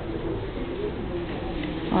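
Low, indistinct murmur of distant voices and room ambience in a large gallery, with no single sound standing out.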